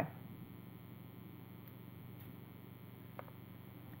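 Quiet room tone with a steady low electrical hum, and one faint short click about three seconds in.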